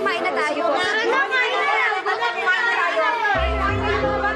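Several people talking over one another, with background music under them; a deep bass note comes into the music a little after three seconds in.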